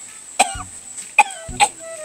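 A man coughing, three sharp short coughs, over background music with a slow low beat.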